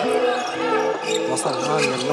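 A basketball bouncing on a hardwood court during live play, heard under an Arabic commentator's voice and steady background music.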